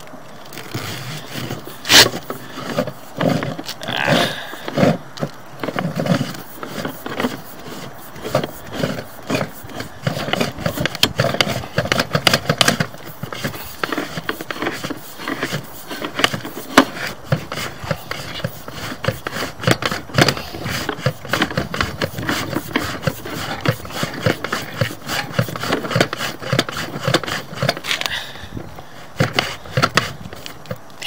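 Push cable of a sewer inspection camera being fed by hand down a drain pipe: a continuous run of rapid, irregular clicks, knocks and scraping. A louder knock comes about two seconds in.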